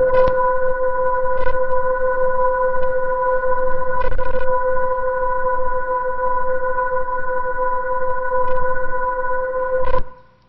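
LIGO gravitational-wave detector output, the photodetector signal played as audio through speakers: a steady noise hiss with a stack of steady high-pitched tones and a few faint clicks, starting and stopping abruptly. The high-pitched tones come from the thin wires holding the mirror masses, which vibrate like violin strings.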